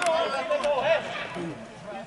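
Indistinct voices calling out across a football pitch, the loudest in the first second, with no clear words.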